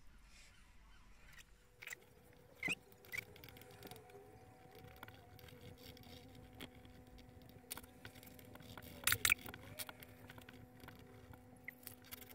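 Faint pencil strokes on paper with a few soft clicks and scratches, and a faint steady hum that comes in about halfway through.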